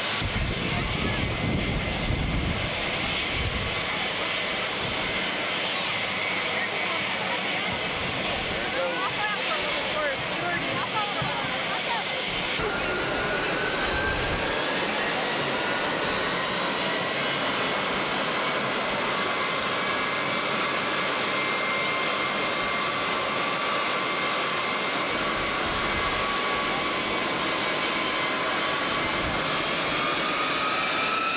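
Air Force One's jet engines running, with a whine that rises slowly in pitch from about halfway through as the engines power up for departure. Crowd voices sound over the engine noise.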